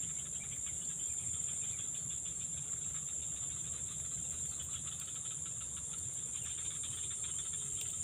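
Steady, high-pitched chorus of insects.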